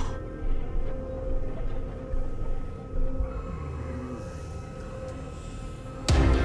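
Film-score music with a held, steady drone over a low rumble, and a short falling slide about four seconds in.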